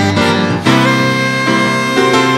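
Saxophone playing a short phrase that settles into a long held note about two-thirds of a second in, over grand piano accompaniment in a slow jazz ballad.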